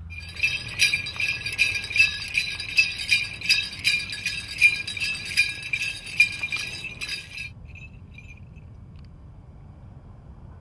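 Bells on a powwow dancer's regalia jingling in a steady rhythm with his dance steps, about two to three pulses a second. The jingling stops suddenly about seven and a half seconds in.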